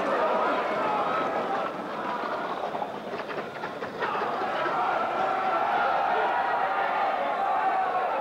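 Live track sound of a greyhound race: voices over a continuous mechanical clatter, dipping in level between about two and four seconds in.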